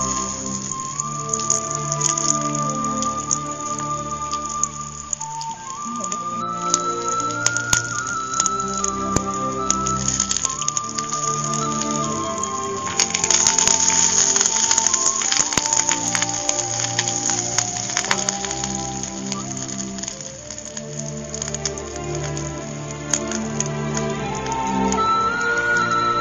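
Background music with a slow melody of held notes, over the crackle and sizzle of sliced onion, green chillies and curry leaves frying in a pan. The crackling is thickest a little past halfway through.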